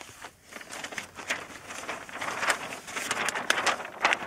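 Large paper chart sheet being lifted and flipped over, rustling and crackling, growing louder through the second half.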